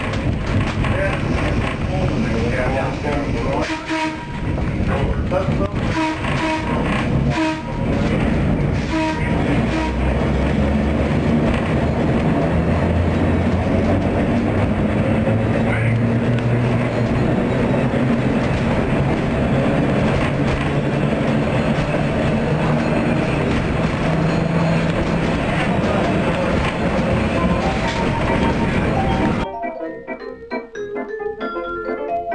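Electric interurban car running, heard from inside its cab: steady rumble and rattle of the wheels and trucks on the track, with scattered knocks in the first few seconds. From about a third of the way in, a low traction-motor hum comes in and steps up in pitch as the car gathers speed. The sound cuts off abruptly just before the end.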